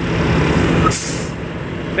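Semi-truck tractor's diesel engine idling with a steady low hum, and a short sharp hiss of released air about a second in.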